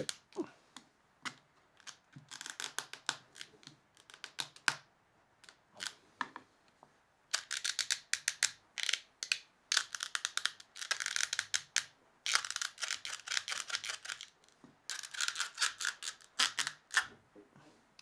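Quick runs of small sharp clicks and crackles in several spells as a glued joint between a 3D-printed resin dovetail and a timber block is bent apart by hand: the wood glue is letting go of the resin, while the resin itself does not crack.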